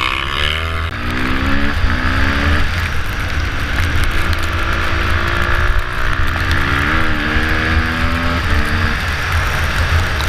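KTM supermoto motorcycle engine heard from on board, revving up and shifting through the gears: its pitch climbs and drops back at each shift, several times, with a steadier stretch in the middle. A heavy low rumble of wind runs underneath.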